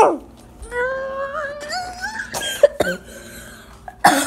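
A child's voice holds a drawn-out, wordless tone that slowly rises in pitch for about a second and a half. It breaks into a couple of coughs about two and a half seconds in.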